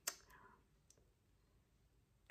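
Near silence, with a short faint click at the very start and another faint click about a second in.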